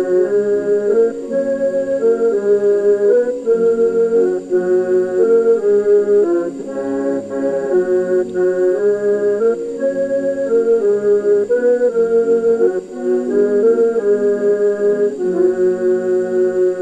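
Church pipe organ and piano accordion playing a carol together: a melody of held notes moving over a line of bass notes.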